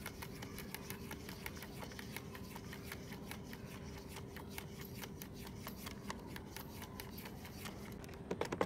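A cat moving about inside a plastic pet carrier, making a dense run of small irregular clicks and scratches, over a faint steady hum.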